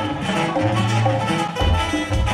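Live sierreño band music: a sousaphone playing a bass line of held low notes under strummed acoustic guitars and congas, with no singing.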